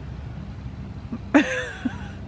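A steady low hum, with a short burst of a person's voice about one and a half seconds in.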